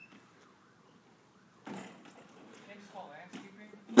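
Mostly quiet outdoor background, near silent at first, then a faint, distant voice speaking briefly; no engine is running.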